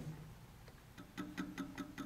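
Ripple tank wave generator ticking at a low drive frequency, several ticks a second, starting about a second in over a faint steady hum.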